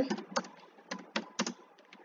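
Computer keyboard keys being typed: about half a dozen short clicks at an uneven pace.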